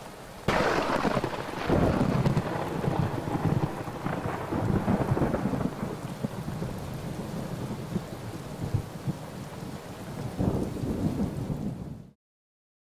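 Thunderstorm: rain falling with a sudden clap of thunder about half a second in, then rolling rumbles that swell several times and cut off suddenly at the end.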